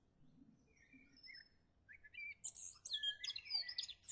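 Small birds chirping: faint high whistles at first, then a quick run of rapid, high chirps from about two seconds in.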